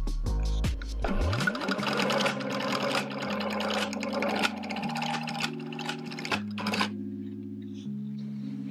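Industrial sewing machine stitching scrunchie elastic and fabric in a fast run of needle strokes. It starts about a second in and stops near the end, over background music with held chords.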